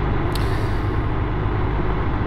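A 1971 Triumph Trophy TR6C's 650 cc parallel-twin engine running steadily while cruising in top gear, with wind and road noise from riding.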